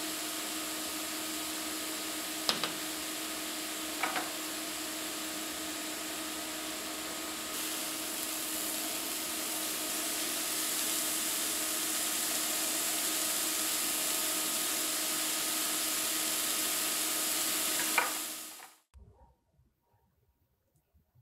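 Beef burger patties sizzling on a hot skillet, a steady frying hiss with a few sharp ticks. The sizzle cuts off shortly before the end.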